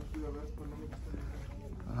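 Indistinct speech, strongest in the first half-second, over the steady low hum of a large store's background noise.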